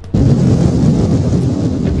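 Cartoon sound effect of a huge blast of fire: a loud, noisy rumble with a hiss on top that starts suddenly just after the beginning and keeps going without a break.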